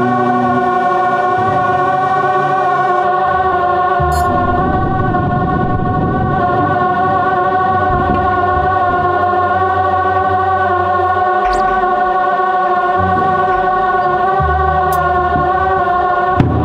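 Korg AG-10 General MIDI sound module playing a dense, sustained chord of many held tones, driven over MIDI by the Fragment spectral synthesizer. Lower notes change underneath every second or two, and there are a few faint high clicks.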